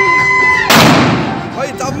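A single loud rifle shot fired into the air, about two-thirds of a second in, trailing off over about a second.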